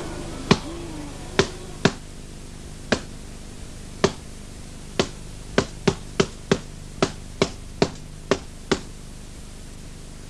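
Boxing-glove punches landing: about fifteen sharp smacks at uneven spacing, coming faster in the middle, over a low steady hum.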